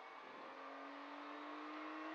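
Rally car's engine heard faintly from inside the cabin, held at a steady note that rises slightly as the car accelerates along a straight, over a hiss of road and wind noise.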